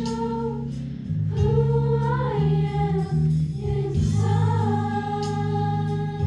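A group of girls singing a song together, sustained melodic phrases over a steady instrumental accompaniment.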